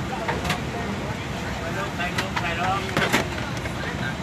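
Airliner cabin during boarding: a steady low hum of cabin air under distant passenger chatter, with a few sharp knocks and clicks from bags going into overhead bins.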